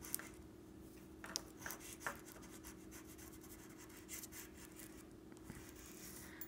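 Faint scratching and rubbing of a pastel crayon drawn across paper in short strokes, with a few soft ticks between about one and two seconds in.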